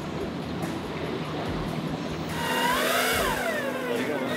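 Outboard motor running steadily on a boat at sea, with a constant rush of wind and water. Just past halfway a person's drawn-out vocal sound rises and then falls in pitch for about a second and a half.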